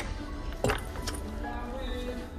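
Metal zipper pulls and hardware on a leather belt bag clinking as the bag is handled and set back down in a wooden display tray: a few sharp clinks in the first second or so. Background music plays throughout.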